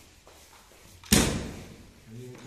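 A single loud bang about a second in, dying away over about half a second.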